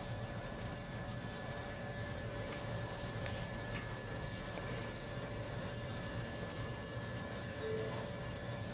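Steady low background hum with faint steady higher tones, and a couple of faint clicks about three seconds in.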